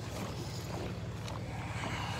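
Steady low hum of a vehicle engine idling, with wind and rustling on the moving phone's microphone.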